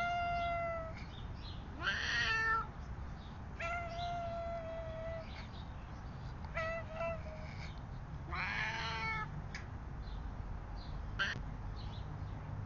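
A black-and-white domestic cat meowing repeatedly close to the microphone: about six meows a second or two apart, the longest held steady for over a second, the last one short.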